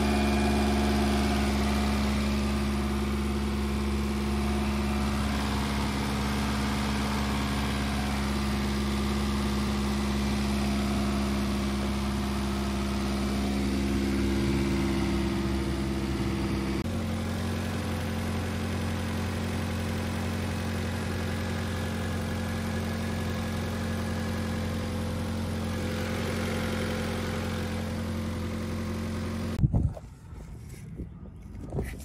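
The 1989 Mazda 323's four-cylinder engine idling steadily. Its tone shifts a little just past halfway, and the sound cuts off just before the end.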